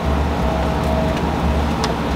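A steady low rumble with a soft hiss, and a light slap near the end as a hand full of baby powder is pressed onto a face.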